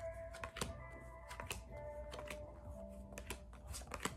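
Faint background music with long held notes, under a scatter of light, irregular clicks and taps.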